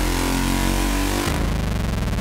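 Psychedelic trance music from a DJ set: a sustained, engine-like buzzing synth drone. About a second and a half in, the low bass drops out and a rapidly pulsing synth texture takes over.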